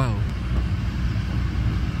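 Steady low rumble of running vehicle engines and street traffic, with no distinct knocks or changes.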